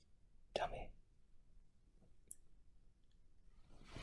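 A short, soft breathy vocal sound close to the microphone, a sigh or murmur, about half a second in, then a faint click, and another breathy swell beginning just before the end.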